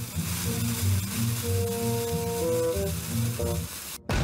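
Cartoon sound effect of a lit fuse sizzling as it burns down toward a blast, over tense background music of slow low notes and a few held tones.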